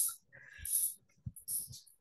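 A man's breaths and faint mouth clicks in a pause between spoken phrases: a short breath about half a second in and another near the end.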